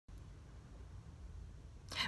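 Quiet background inside a parked car: a faint steady low rumble with a light hiss. Near the end a short rush of breath comes just before speech starts.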